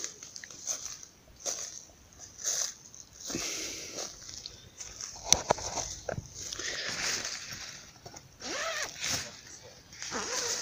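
Nylon tent fabric rustling and handling noises as the tent door is opened, in short irregular bursts. Near the end there is one brief voice-like sound that rises and falls in pitch.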